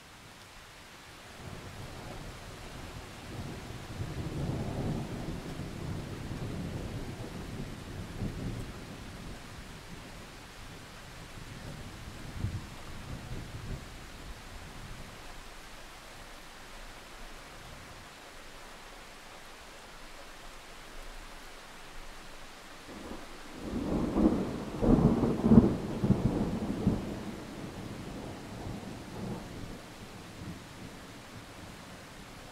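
Thunder over steady heavy rain. A low rumble builds from a couple of seconds in and fades away by about fifteen seconds. A louder peal with several sharp cracks comes near the end, then rolls off.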